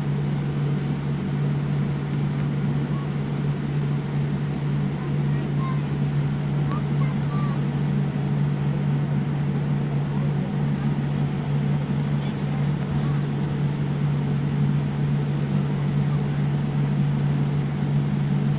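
Steady cabin noise of a jet airliner on the ground, heard from a window seat: a constant low hum with an even rushing noise over it, unchanging throughout.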